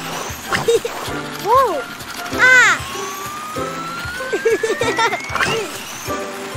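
Animated cartoon soundtrack: bouncy background music, with two short pitched swoops, the second louder and falling, in the first few seconds. Then a thin whistling sound effect rises steadily in pitch for about three seconds.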